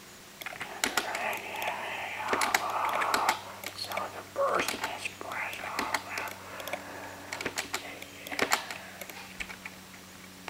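AM talk radio received faintly, its voices muffled and unintelligible under irregular clicks and crackle of static, with a low steady hum.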